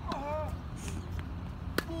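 A tennis racket strikes a ball once with a sharp pop near the end, after a couple of faint ball bounces on the hard court. Near the start comes a short vocal call falling in pitch, like the shouted "Leeho" that follows his other shots.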